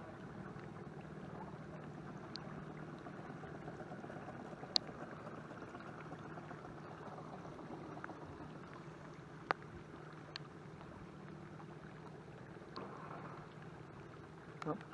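Steady low hum of a small boat motor with water washing along the hull of a canoe under way. Two brief sharp clicks, about five seconds in and again near ten seconds.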